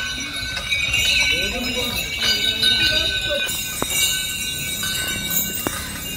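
Crowd of people talking around a walking Asian elephant, with the metallic jingle of the bells on its neck and the clink of its leg chains as it moves; two sharp clinks stand out in the second half.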